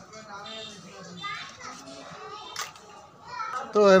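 Faint background voices with no distinct work sound. A man starts speaking loudly just before the end.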